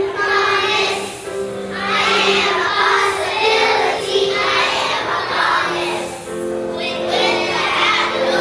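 A class of kindergarten children singing a song together on stage, over a musical accompaniment with steady held notes beneath the voices.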